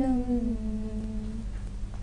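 A female voice holding the last sung note of a Telugu lullaby, unaccompanied, fading out about a second and a half in.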